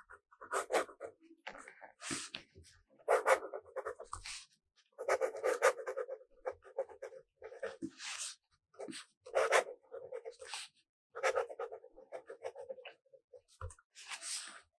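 Fountain pen nib scratching across notebook paper in short, irregular strokes, with brief pauses between words.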